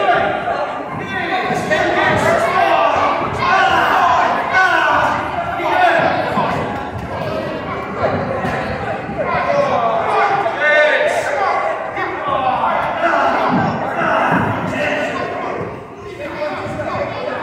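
Thuds of a child's kicks and punches landing on a padded kick shield, over the chatter of many children's voices in a large hall.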